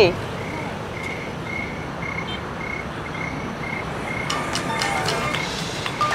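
A cricket chirping in short regular pulses, about two a second, over a steady low background hum. Some clicks and a few brief tones join near the end.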